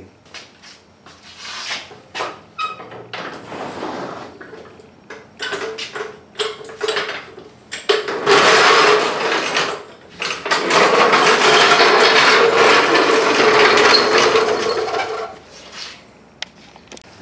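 Light metallic clicks and clinks of a socket being handled and worked onto an impact wrench's anvil. From about halfway, a loud steady mechanical noise with a constant hum in it takes over for several seconds, pausing briefly once.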